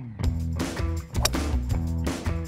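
Background music with a steady bass line. About a second in, a single sharp crack of a TaylorMade SIM titanium fairway wood striking a golf ball.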